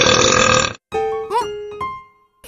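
A loud cartoon burp lasting under a second, then a short playful musical sting with sliding, bending notes.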